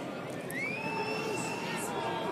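Football stadium ambience of a thinly filled ground, a steady crowd and pitch noise. From about half a second in, a long high call rises in pitch and is held for about a second.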